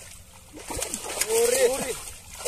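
Voices calling out, with water splashing as hands grope in shallow muddy water. The calls come in about half a second in and are loudest in the second half.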